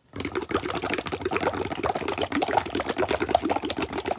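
Air blown through a drinking straw into a cup of water and dish soap: a steady, rapid bubbling gurgle as the foam builds up over the rim. It starts just after the beginning and stops near the end.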